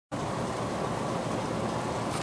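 Steady rushing air noise of a large fan in a big indoor hall, cutting in abruptly out of silence.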